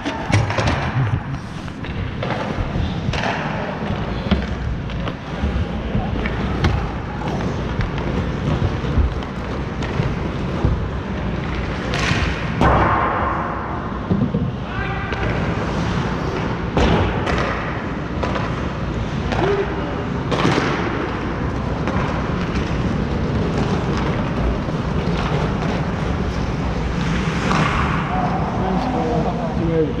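Ice hockey play in an echoing indoor rink: scattered sharp knocks and thuds of sticks, puck and boards over a steady rink rumble, with indistinct players' voices now and then.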